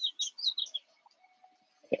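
Small bird chirping: a quick run of short, high chirps through the first second, then quiet birdsong until a voice starts near the end.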